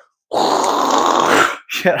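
A man's rough, breathy vocal noise, about a second long and without clear pitch, mimicking a heavy drone taking off and swerving through the air. Speech starts again near the end.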